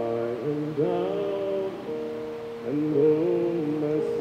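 A slow hymn melody, sung or hummed, over held keyboard chords.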